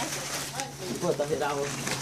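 Voices of people talking in the background over a steady low machine hum.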